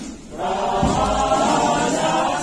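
A choir singing a Greek Orthodox hymn in several voices. After a brief pause at the start, the singing comes back in about half a second in.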